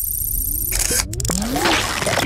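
Electronic sound effects of a TV channel's animated logo sting: a low rumble under a high, glittering shimmer, then a few sharp clicks about a second in, followed by short rising sweeps.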